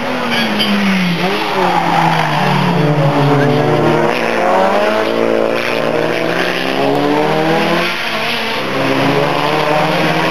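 Mitsubishi Lancer Evolution race car's engine revving hard through a corner, its pitch dropping and climbing again several times as it brakes, shifts and accelerates, with tyre squeal.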